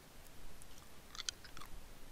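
A quick cluster of faint small clicks and crackles about a second in, over quiet room tone.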